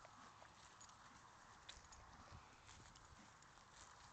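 Faint, scattered hoof thuds and ticks of a mare and her foal moving on grass pasture.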